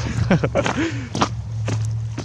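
Footsteps on frozen grass and patches of ice, several steps in quick succession.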